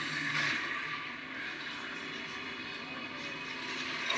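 A steady droning sound-bed from a television drama's soundtrack, heard through a TV's speakers, swelling slightly in the first second.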